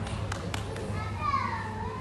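Young children's voices and chatter in a hall, with a few sharp clicks near the start and one child's drawn-out call, falling then rising in pitch, about a second in, over a steady low hum.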